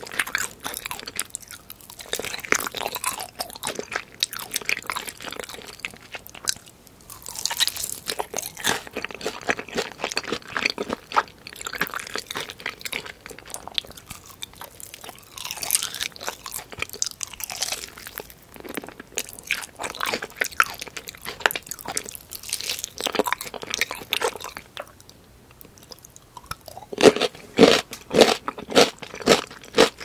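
Close-miked crunching and chewing of sauce-coated Korean fried chicken, its crisp coating crackling with each bite. Near the end the chewing turns into a steady run of louder strokes, about two a second.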